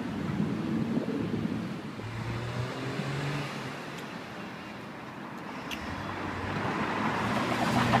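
Road traffic: vehicle engines running nearby as a steady low hum, with the noise growing louder toward the end as a vehicle comes closer.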